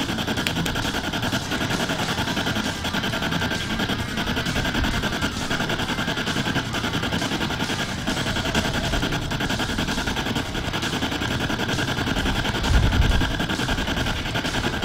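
Spirit box (a radio that sweeps rapidly through stations) scanning continuously: a steady stream of rapidly chopped static with brief snatches of broadcast sound.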